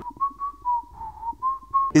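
Whistling: a short run of about half a dozen notes held close to one pitch, dipping slightly and back up.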